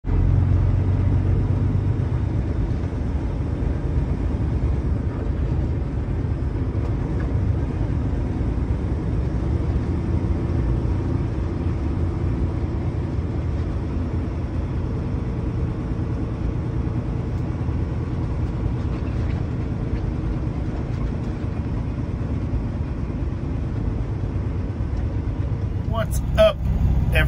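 Semi truck's engine and tyres rumbling steadily, heard from inside the cab as it rolls along a gravel road.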